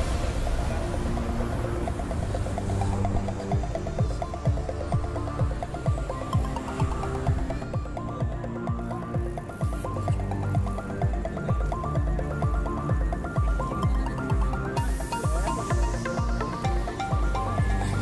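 Electronic music with a steady, even beat.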